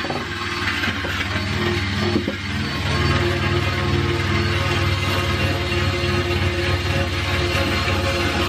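DeWalt drill spinning a wire cup brush against the car's steel floor pan, scrubbing off surface rust: a harsh, steady scratching hiss over a low, even motor hum.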